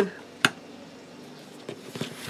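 A strip of card stock being scored with a bone folder on a plastic scoring board: faint scraping and handling, with one sharp click about half a second in.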